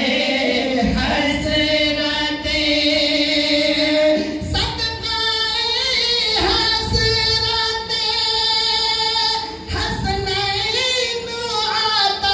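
Men singing an Urdu devotional naat unaccompanied into microphones, holding long drawn-out, wavering notes with brief breaks between phrases.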